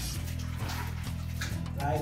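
Water running from a kitchen sink tap as sea moss is rinsed under it, over steady background music.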